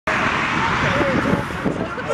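Several voices of a small group talking at once, over a loud, steady rushing noise.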